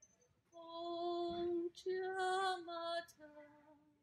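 A woman's voice singing a devotional chant in long held notes: one note held for about a second, a brief break, a slightly higher note, then a lower, softer note that fades away near the end.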